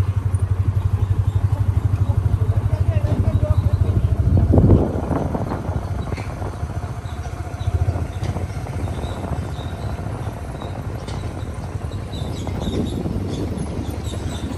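Engine rumble and road noise from a moving motorbike. The rumble is loud with a fast pulse for the first five seconds, then drops off to a lower, steadier level.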